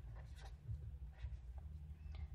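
Faint scratching of a marker pen writing a word on paper, in a few short strokes.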